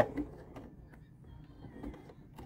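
A few faint clicks over a low steady hum as hands handle quilted fabric at an electric sewing machine that is not stitching.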